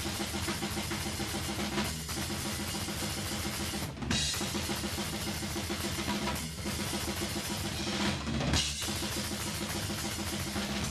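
ddrum Reflex drum kit played fast: a dense, driving pattern of bass drum, snare and cymbals, broken by short breaks every two seconds or so.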